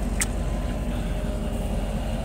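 Combine harvester engine idling steadily, a low even rumble, with one brief click just after the start.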